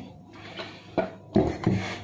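Plastic blender jar lifted off its motor base and set down on the countertop: a sharp click about a second in, then a knock and a short rubbing scrape.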